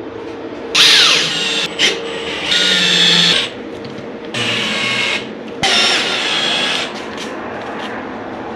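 Makita 18V cordless drill running in four short bursts of about a second each, driving 1-inch wood screws through cement board into the plywood behind it.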